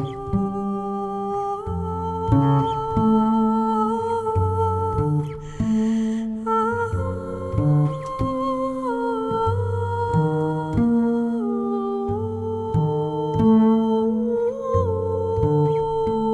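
Wordless music for voice and double bass: a woman's voice hums long held notes that bend and step slowly in pitch, over a plucked double bass playing short, separate low notes.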